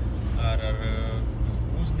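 Steady low drone of a car on the move, heard from inside the cabin. A man's voice holds a drawn-out sound for about a second over it.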